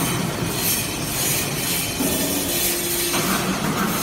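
SBJ-360 hydraulic scrap-metal briquetting press running: a steady machine hum and hiss from its hydraulic power unit, with the tone shifting about two seconds in and again near three seconds as the press moves through its cycle.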